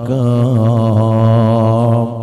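A man chanting an Arabic devotional poem (qasida) in praise of the Prophet, drawing out one long, slightly wavering note between verses.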